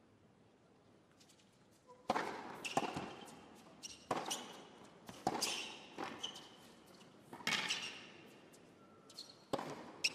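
Tennis ball hit back and forth by rackets in a rally, a string of sharp hits and bounces starting about two seconds in, roughly one every second, echoing in a large indoor arena.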